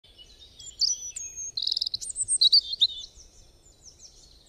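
Birds singing and chirping, with many short whistled notes and a rapid trill about a second and a half in, then fading away near the end.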